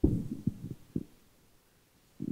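Low thumps and knocks of a handheld microphone being handled: a sudden burst at the start, with further thumps about half a second and a second in.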